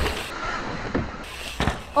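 Dirt jump bike going over a small dirt jump: tyre noise on dirt, with a knock about a second in and another shortly before the end as the bike lands and rolls away.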